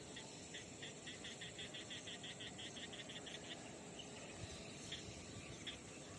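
Faint insect chirping: a rapid, even series of short high chirps, about six a second, that stops about three and a half seconds in, over a low outdoor hiss.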